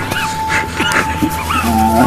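Several short, high whimpering cries that rise and fall, like an animal's yelps, over a steady held tone and a low drone.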